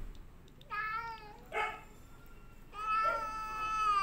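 Domestic cat meowing at its owner: a short meow about a second in, then a long, drawn-out meow from about three seconds in. The owner takes the meowing as the cat saying it is hungry and wants to be fed.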